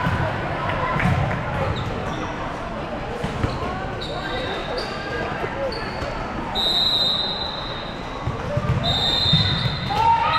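Indoor volleyball match in a large echoing hall: background chatter and scattered ball hits. A series of short, high, steady-pitched squeals comes through, the longest and loudest about seven seconds in.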